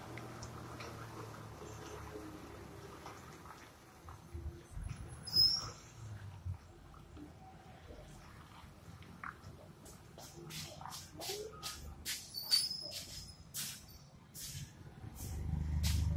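Low rumble of heavy truck engines, swelling near the end as a vehicle draws closer, with two brief high-pitched squeals and many sharp clicks in the second half.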